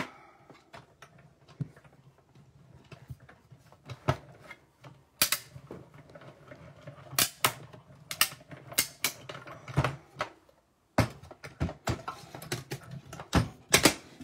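Mini Stampin' Cut & Emboss Machine being hand-cranked, a die-cutting plate sandwich passing through its rollers: a run of irregular mechanical clicks and knocks over a low steady hum for much of it.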